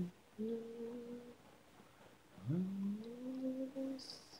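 Solo female voice singing wordless notes with no accompaniment, as an isolated vocal track. There is a short held note about half a second in, then a note that scoops up from low about two and a half seconds in and is held.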